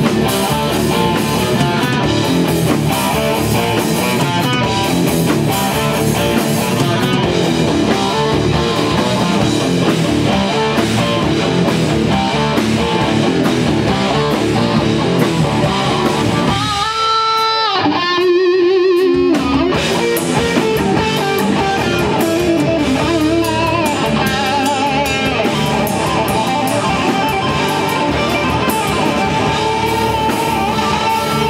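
Live rock band playing loud with electric guitars, bass and drums. Just past the middle the drums and bass drop out for about two seconds, leaving a guitar's held, wavering notes, then the full band comes back in.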